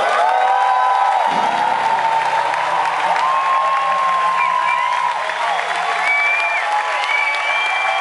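Concert audience applauding and cheering, with several long whistles over the clapping.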